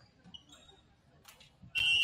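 Referee's whistle in a volleyball gym: one loud, steady, high blast that starts suddenly near the end, after a quiet stretch between rallies.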